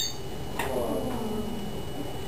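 Speaker-driven wave vibrator buzzing as it shakes a stretched string, its pitch shifting as the frequency is changed, with a short click at the very start.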